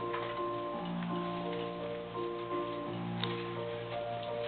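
Instrumental accompaniment playing without a voice: steady held notes, a sustained low bass note under higher notes that change at an even pace, about twice a second.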